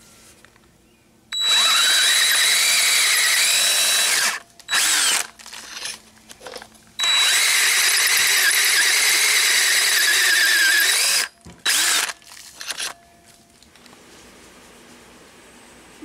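Electric hand drill with a large twist bit boring a bolt hole into the end of a John Deere tractor crankshaft, finishing the hole through the flywheel flange. It runs in two long spells of about three and four seconds with short blips between and after, the whine wavering as the bit cuts.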